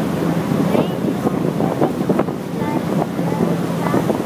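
A tour boat's engine running with a steady low hum under wind buffeting the microphone and water rushing past the hull.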